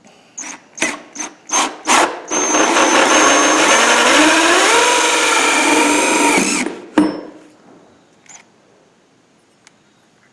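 Cordless drill with a hole saw cutting through a plastic coffee container: a few short trigger bursts, then about four seconds of steady cutting with the motor's pitch dipping and rising under load. It stops with a sharp knock.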